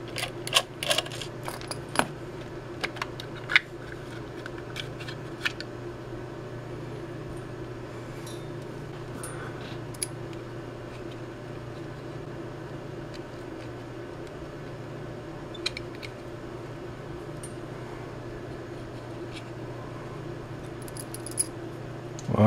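Small screwdriver taking apart the plastic case of a Kill A Watt EZ plug-in power meter: scattered clicks and rattles of screws and plastic parts, most of them in the first few seconds and a few more later, over a steady low hum.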